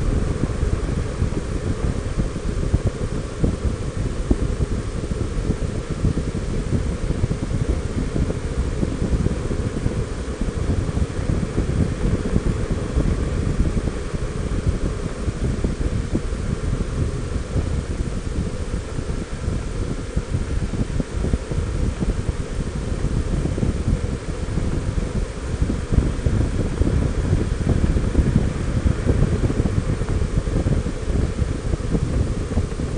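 Steady low wind rumble buffeting the microphone of a camera mounted on a Honda Gold Wing 1800 motorcycle travelling at road speed. It stays even throughout, with no change in pace.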